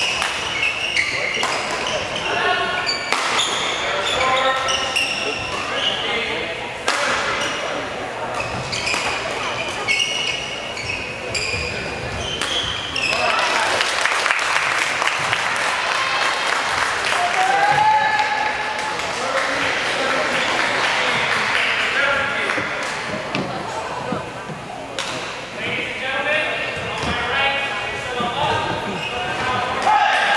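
Indoor badminton play: sharp knocks of rackets hitting the shuttlecock and a brief squeak of a shoe on the court floor, under spectators' talk. Some way past the middle a denser stretch of crowd noise comes in, then talk resumes.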